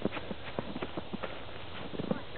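Snow crunching: a quick, irregular run of short, soft crunches.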